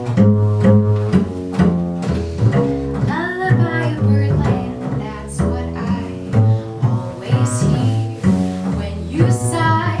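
Upright double bass played pizzicato in a steady plucked jazz line, with piano chords over it; a woman's voice comes in singing near the end.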